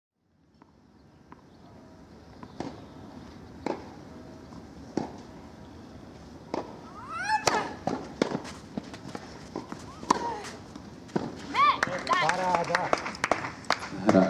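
Tennis balls struck back and forth by rackets in a rally on a clay court, with sharp hits about a second apart. Voices join about halfway in and are more prominent near the end.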